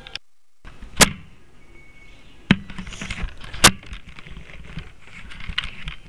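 Handling noise of a child's toy camera held close: a few sharp knocks and clicks of fingers and hands on the plastic body, the loudest about a second in and a little past the middle, over faint rubbing. Right at the start there is a short moment of total silence.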